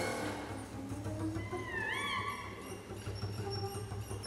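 A small chamber ensemble of strings and harp playing a free contemporary improvisation, sparse and made of scattered short notes. About two seconds in, a high note slides down and back up.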